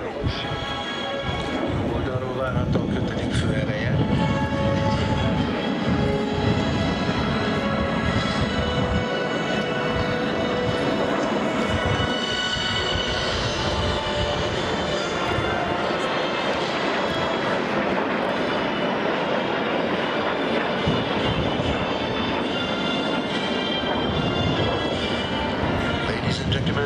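Music playing over a steady jet-engine rumble from a formation of Aero Vodochody L-39 Albatros jet trainers flying overhead.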